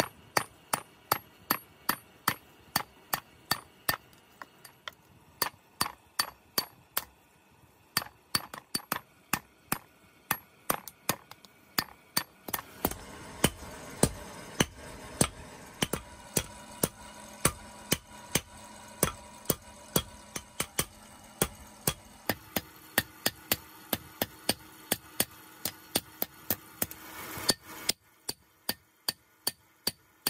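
Hand hammer striking a red-hot steel blade on a steel anvil block in a steady rhythm of about two blows a second. Each blow is a sharp metallic clink. Through the middle stretch a steady hum sits behind the strikes and cuts off suddenly near the end.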